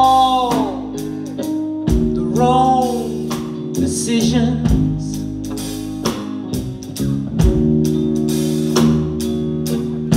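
Live soul-blues band playing a slow song: a woman's lead vocal in phrases over electric guitar, bass, keyboards and drums, with drum hits spaced a few seconds apart.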